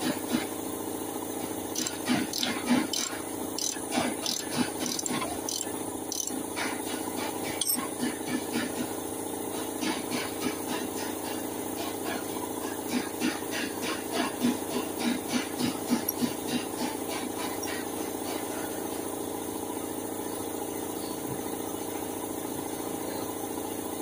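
Hand tools clinking and rattling against a Toyota Hilux front disc-brake caliper, in irregular clusters of short metallic taps over a steady background hum.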